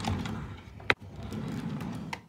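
A drawer sliding on its runners, a rough scraping rumble, with one sharp click about a second in.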